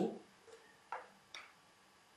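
A pause in a quiet room broken by a few faint, short clicks, about a second in and again shortly after.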